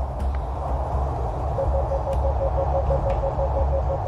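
A door-entry intercom panel beeping rapidly, about six short pulses a second, starting about one and a half seconds in as its call button is pressed, over a steady low rumble.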